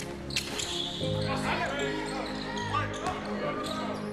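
Background music laid over basketball game sound. A sharp knock from the ball or court comes about a third of a second in, followed by indistinct voices.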